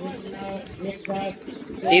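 Faint, distant voices over a steady low hum, then a man's loud shouted coaching starts near the end.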